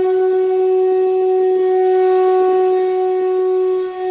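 A single long, steady note from a wind instrument, held at one pitch, with a brief dip near the end.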